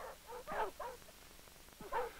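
Dogs whining faintly: a few short high whimpers in the first second and one more near the end.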